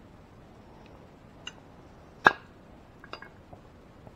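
A single sharp metallic snap about two seconds in, as side cutters clip a metal mounting tab off a chrome headlight housing. Fainter clicks of metal and tool handling come before and after it.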